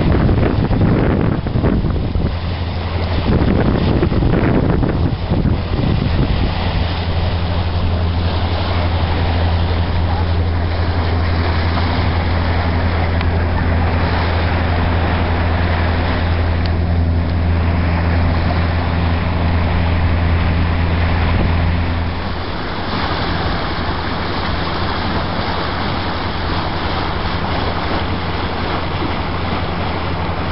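Boat engine running steadily while motoring, a low drone under the rush of water along the hull and wind on the microphone. The engine's low note drops a little about 22 seconds in.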